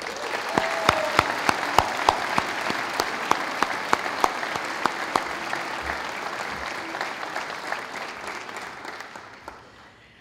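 Audience applauding, with a few sharp claps standing out close by; the applause dies away over the last couple of seconds.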